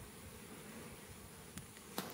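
Faint, steady hum of honey bees buzzing over the open frames of a hive, with a light tap or two near the end.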